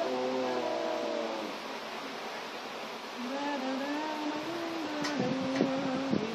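A slow melody of long held notes that step from one pitch to the next, with a few light clicks near the end.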